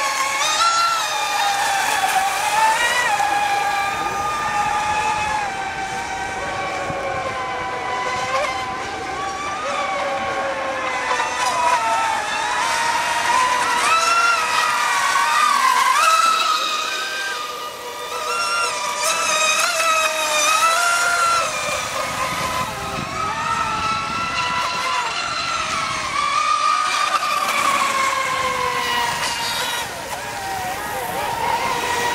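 Several brushless electric RC speedboats running at speed, their motors whining at several pitches at once that rise and fall as they throttle and turn.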